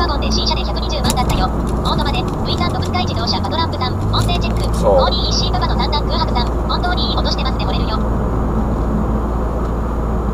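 Toyota Alphard's 2.4-litre engine heard through an exhaust with a straight pipe in place of the centre section, a steady low drone while driving. The drone shifts in pitch between about two and four seconds in.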